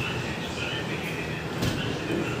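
Sujata electric mixer-grinder running steadily, blending a shake in its plastic jar, with a short knock about one and a half seconds in.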